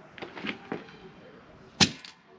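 A single sharp knock near the end, after a few faint small sounds.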